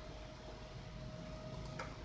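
Quiet room tone in a pause in speech: a faint even hiss with a faint steady hum.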